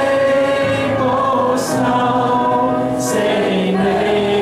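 A recorded Chinese worship song played back: a choir singing held, flowing lines over accompaniment.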